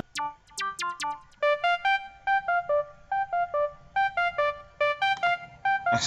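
Software synthesizer lead in FL Studio playing a melody of short, plucked, piano-like notes: a few scattered notes in the first second, then a steady run of quick repeated notes.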